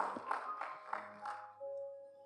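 Soft background music of sustained, held chords, with a change of chord about a second and a half in, playing under the pause before the sermon. A couple of faint taps sound early on.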